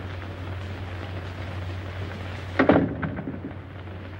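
Steady hiss and crackle with a low hum from an old film soundtrack. About two and a half seconds in, a brief louder sound with a pitched edge rises above the hiss.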